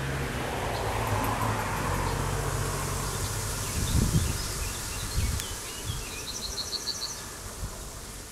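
Yellowhammer singing: a quick series of about eight short, evenly repeated high notes around six seconds in, over a steady low rumble, with low thumps about four and five seconds in.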